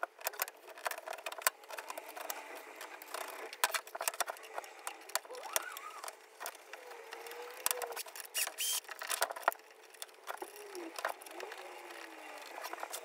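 Wooden parts clicking and knocking as pine arms are handled and fitted onto bolts on a metal-topped workbench, in many short irregular taps.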